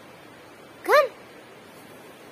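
A chihuahua gives one short whine about a second in, rising and then falling in pitch.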